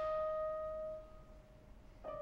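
Solo oboe holding one sustained note that tapers off about a second in. A short rest follows, and the next phrase begins at the very end.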